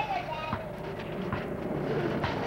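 High-pitched children's voices calling out and squealing without clear words, one of them holding a long note in the second half.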